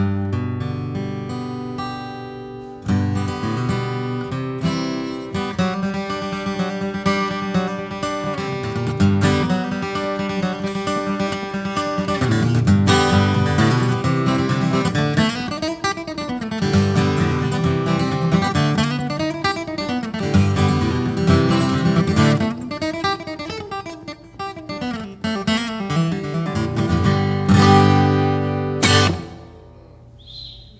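Taylor Grand Pacific dreadnought acoustic guitar flatpicked with a medium pick in bluegrass style, mixing quick single-note runs with strummed chords. It ends on a last chord shortly before the end.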